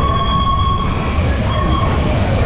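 Train whistle sounding a long blast and then a shorter one, over a low steady rumble.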